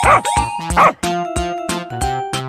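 A dog barking twice, short high yips about 0.7 s apart, over children's background music.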